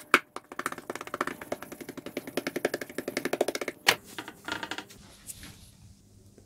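Rapid fingertip tapping as a ball of naan dough is patted and spread flat by hand on a stone worktop, many light taps a second. A sharper knock comes just as it starts and another about four seconds in.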